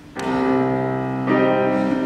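Grand piano playing sustained chords on its own, with one chord struck just after the start and a fresh chord about a second later.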